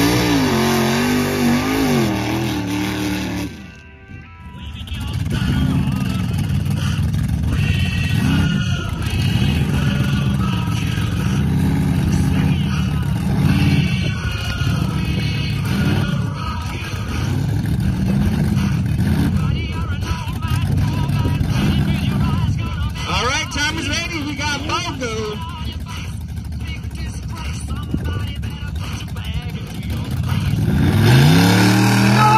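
Mud-racing engines revving at the start line. For the first few seconds a race buggy's engine revs up and down, then cuts off sharply about four seconds in. After that a lifted pickup truck's engine is blipped over and over, about every two seconds, as it waits to launch.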